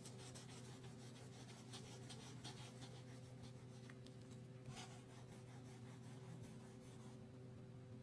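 Faint scratching of a wax crayon shaded rapidly back and forth across paper, fading out about seven seconds in. A steady low hum runs underneath.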